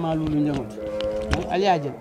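A voice speaking in drawn-out syllables: one long held note, then a short rising-and-falling syllable near the end.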